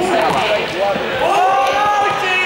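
Young men's voices calling out in a reverberant sports hall, with one long drawn-out call near the end, while a small ball is struck by hand and bounces on the hall floor.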